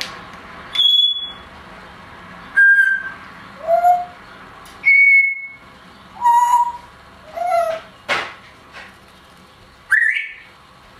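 Timneh African grey parrot giving a string of short whistles and calls, about one a second and each at a different pitch: some high, clear and steady, others lower and bending up and down. A sharp click comes about eight seconds in.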